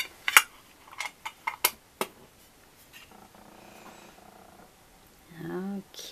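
Metal lid of a round tin can clicking and tapping against the tin about six times as it is handled and put back on; the first click is the loudest.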